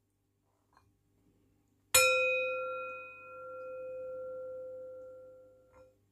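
Brass singing bowl struck once with its wooden striker about two seconds in. It rings with a clear, sustained tone that fades, swells again and dies away near the end.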